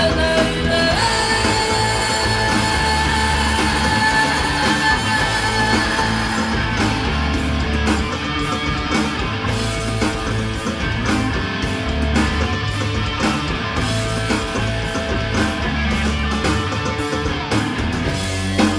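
Live rock band with a distorted electric guitar played through a Marshall amplifier, taking the lead with long held notes, over bass and drums. A sung 'oh!' opens it, then the guitar carries on without vocals.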